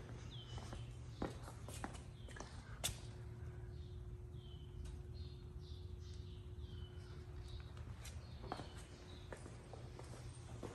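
Faint footsteps on a concrete floor with a few sharp knocks, over a low steady hum. In the background a bird chirps repeatedly, short falling notes about twice a second.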